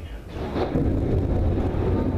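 Thunder from a lightning strike: a sharp crack about half a second in, then a loud, steady low rumble.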